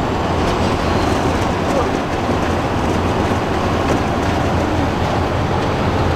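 Converted school bus driving at highway speed, heard from inside the cabin: steady engine drone and road noise.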